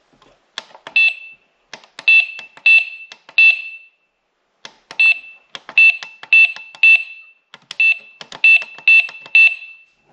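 Plug-in wireless doorbell receiver with its side button clicked again and again. Each click is answered by a short, high, identical beep, about a dozen in all, in two runs with a pause of about a second between them.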